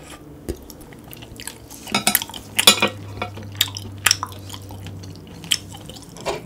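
Close-miked eating of a sauced piece of webfoot octopus: wet mouth and chewing noises, strongest a couple of seconds in. A few sharp clicks follow as wooden chopsticks knock against the ceramic plate and bowl and are set down.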